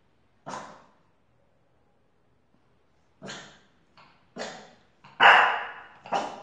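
A French bulldog barking: one bark about half a second in, then after a pause a quick run of barks over the last three seconds, the loudest near the end.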